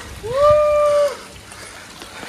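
A single long, high call from a person's voice: it rises at the start, holds one pitch for about a second, and stops.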